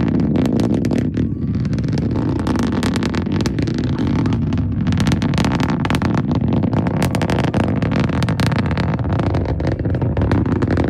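Delta IV Heavy rocket's RS-68A engines heard from a distance as it climbs after liftoff: a steady, heavy low rumble laced with dense crackling.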